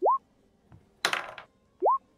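Two short rising 'bloop' alert tones from an online dice roller, one for each d20 of a roll made with advantage, about two seconds apart. A brief hiss-like burst sits between them.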